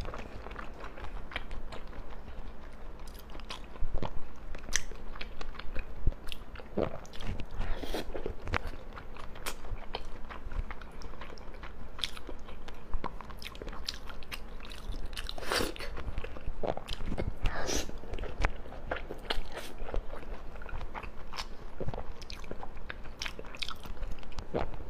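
A person chewing and biting raw salmon slices topped with fish roe, close to a clip-on microphone: irregular wet smacks and sharp clicks of mouth sounds.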